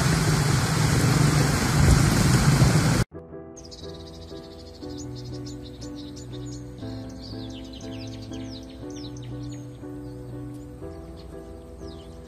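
Water rushing and splashing over stones in a shallow outflow, loud and steady, cut off suddenly about three seconds in. Then quieter background music of sustained chords that change every second or so, with high chirping bird calls over it.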